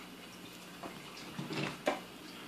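Quiet room with a few faint handling sounds and one sharp click just before the end.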